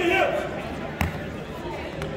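Voices echoing in a large gymnasium, with one sharp knock about halfway through that rings briefly in the hall.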